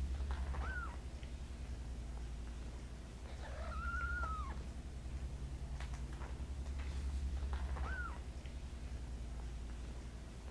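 Cat meowing three times in a high voice: a brief call about a second in, a longer arched call of about a second in the middle, and another brief call near the end. A steady low hum runs underneath.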